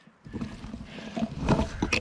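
Leafy branches of scrub oak rustling and scraping against a handheld camera and clothing, with low handling rumble and scattered crackles. It starts about a quarter second in and grows louder toward the middle.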